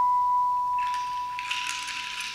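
Electronic synthesizer music: a single held high tone fading slowly, joined about a second in by a hissing wash of noise.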